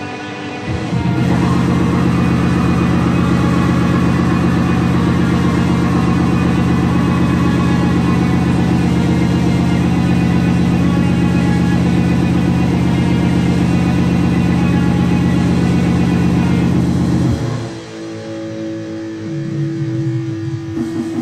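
Raw black metal/industrial rehearsal recording: a loud, dense distorted drone holding one low pitch comes in about a second in, then cuts out suddenly near the end into a quieter passage with a single held note.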